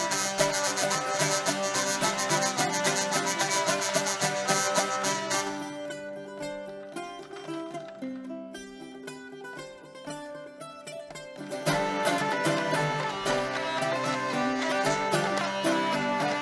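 Hurdy-gurdy and a plucked string instrument playing a Swedish polska together, the hurdy-gurdy's melody over sustained drones. About a third of the way in the music drops to a quieter, thinner passage for about six seconds, then the full sound returns.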